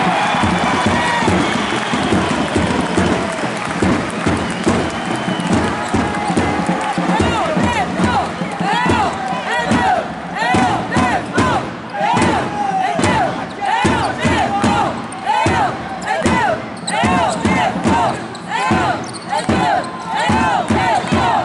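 Basketball game heard courtside: sneakers squeaking on the court floor in many short rising-and-falling chirps, thickest from about a third of the way in, with the ball bouncing and the crowd in the hall.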